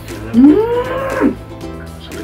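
A person's voice held out in one long drawn-out call that rises and then falls in pitch, over background music.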